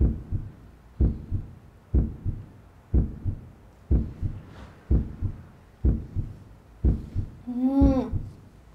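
A heartbeat sound effect: a steady double thump, lub-dub, about once a second.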